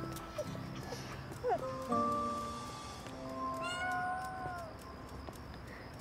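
A cat meowing once, a long call that rises and falls, about three and a half seconds in, over soft background music with long held notes.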